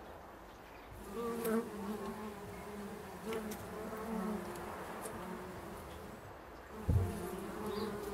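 Bumblebees buzzing in flight around the entrance hole of a wooden bee box; a low, steady wing buzz starts about a second in, fades briefly, and returns near the end. A sharp thump comes about seven seconds in.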